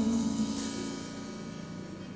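The song's closing chord on an electric stage piano, with a cymbal ringing under it, dying away steadily.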